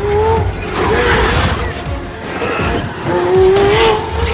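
Movie sound mix of a red supercar skidding across a hard floor, its tires squealing in wavering tones, with the longest and loudest squeal near the end, over a low rumble, scattering debris and a music score.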